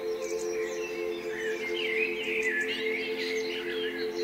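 Songbirds chirping and warbling over soft, steady sustained music tones. The bird calls grow busier in the second half.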